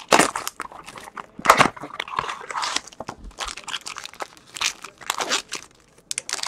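Crinkling and tearing of a plastic wrapper and rustling of a cardboard box as a Topps Triple Threads trading-card box is opened and its wrapped pack unsealed, in irregular scratchy bursts.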